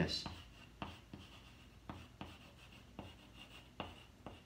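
Chalk writing on a blackboard: a string of light, irregular taps and short scrapes as the letters are chalked.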